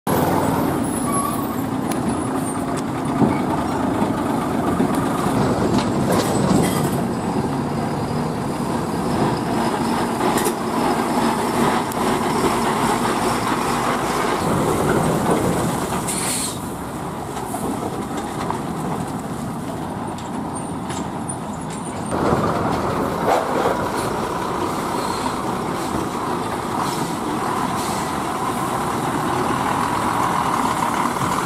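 Heavy loaded lorries' diesel engines running and tyres rolling as the trucks creep past close by, with a short sharp hiss about halfway through.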